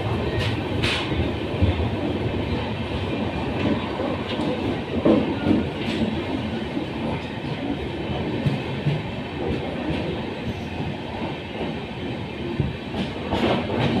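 Passenger train coach running along the track, heard at its open door: a steady rumble and rattle of the wheels on the rails, with a run of sharper clickety-clack near the end as the wheels cross rail joints.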